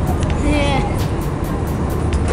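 Airliner cabin noise in flight: a steady low drone that fills the cabin, with a person's voice heard briefly about half a second in.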